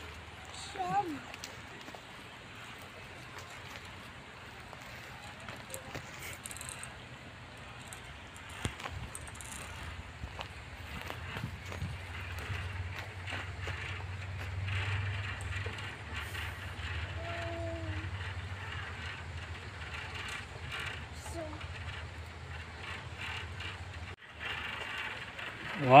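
Faint clinks and rattles of a climbing harness's lanyards and carabiners moving along a steel cable over a steady outdoor background, with scattered small clicks throughout.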